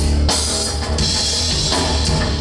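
Live rock band playing loudly: electric guitars, bass and a drum kit with ringing cymbals.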